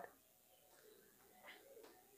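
Near silence: room tone, with a faint brief sound about one and a half seconds in.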